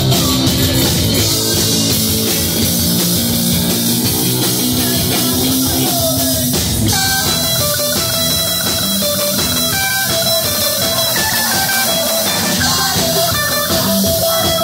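Live rock band playing loud and steady: electric guitar over a drum kit. About halfway through, the part changes and higher held notes come in.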